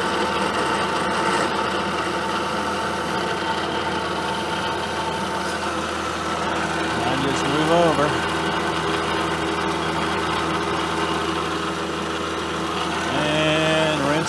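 Vertical milling machine with a carbide end mill cutting a slot in a metal block, running steadily at about fifty thou depth of cut. The spindle and the cut make a continuous whir with several steady tones.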